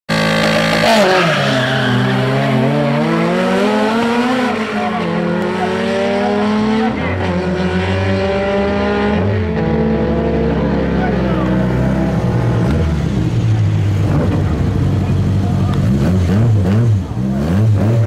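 Two small race cars, one a Fiat Uno, launching side by side in a drag race. Their engines rev hard, rising in pitch and dropping back at each of several gear changes.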